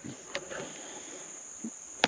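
Steady, high-pitched chorus of crickets and other insects in summer woodland, with one faint click about a third of a second in.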